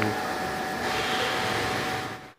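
Steady background noise with a faint continuous hum, like a running fan or air-handling unit.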